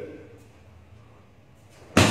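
A single sharp crack from a karate kick near the end, the loudest sound here, ringing on in the big hall.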